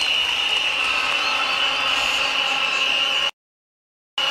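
Stadium crowd noise: a large crowd cheering, with a steady shrill drone above it, which cuts off suddenly about three-quarters of the way through.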